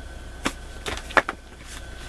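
A few light knocks and clicks of cardboard tarot deck boxes being handled and set down on a table, over a steady low hum.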